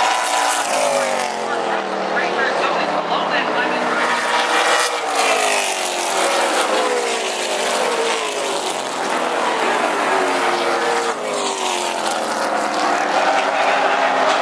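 A pack of late model stock cars racing on an oval, their V8 engines running hard, with the pitch of several engines rising and falling as they pass and overlap.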